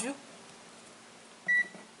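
Digital multimeter giving one short, high beep about one and a half seconds in, with faint handling of the meter around it.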